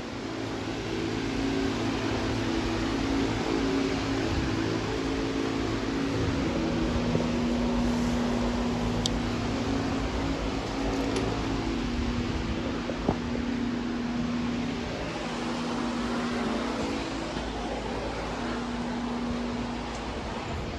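Barn ventilation running with a steady hum, with a low drone held throughout and a couple of faint clicks in the middle.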